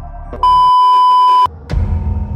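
A loud electronic beep held at one steady pitch for about a second, breaking into background music. Near the end a thud and a low rumble come in.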